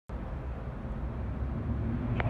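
Steady low rumble of a parking garage's background noise, with no distinct events.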